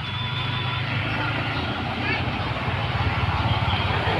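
A vehicle engine running close by with a low, steady rumble that slowly grows louder, with faint voices in the background.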